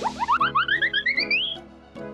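Cartoon transition sound effect: a quick run of short notes, each bending upward, climbing steadily in pitch for about a second and a half, then fading near the end.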